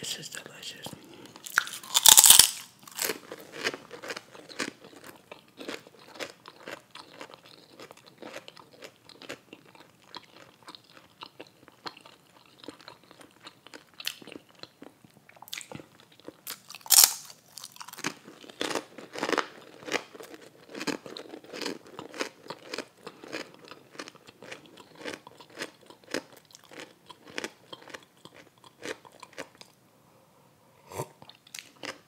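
Close-miked crunching and chewing of potato chips and a grilled cheese sub, an irregular stream of crisp crackles. Two loud crunchy bites stand out, about two seconds in and again about seventeen seconds in.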